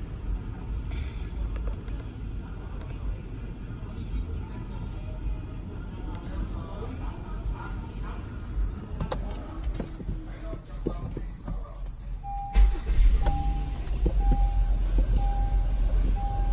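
Light handling clicks over steady background noise, then suddenly a low rumble from the 2018 Honda Odyssey with its seatbelt reminder chime beeping evenly, about one beep every 0.7 s, for the last few seconds.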